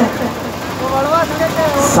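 A voice singing a devotional Urdu/Hindi song: after a short pause between lines, a sung phrase begins about half a second in, its pitch gliding up and down, over steady background noise.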